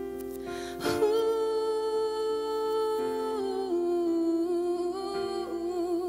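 A woman singing a wordless melody in long held notes with a slight vibrato, over soft musical accompaniment. The voice swells about a second in, steps down in pitch around the middle and rises again near the end.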